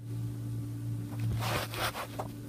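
Water in a plastic basin being stirred gently by hand, a soft swishing that grows louder for a moment near the end.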